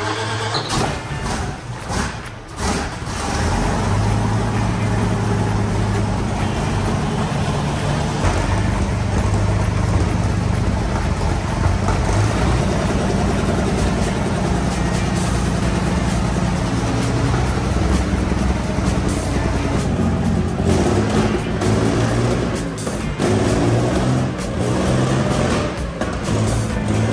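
Rolls-Royce Meteor V12 tank engine running on its first start after reconditioning: a loud, heavy, steady drone that settles after the first few seconds. Background music plays over it.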